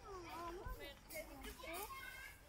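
Children's voices at play, calling and chattering in high, rising and falling tones.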